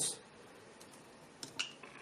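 A single sharp click of a push button on an ISDT BG-8S battery checker, about one and a half seconds in, with the room otherwise nearly silent.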